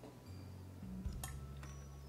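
Light clicks and taps of a plastic squeeze bottle being handled on a table, a few about a second in, over a low steady hum.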